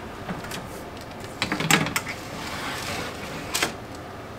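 Countertop oven being loaded: clicks and clatter as the oven's tray and parchment paper are handled, a cluster about a second and a half in, a soft sliding sound after it, and a sharp click near the end.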